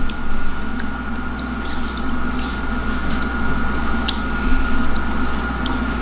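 People chewing bites of a protein bar with a rice-crisp centre: soft, wet chewing with a few faint crunches, over a steady low hum.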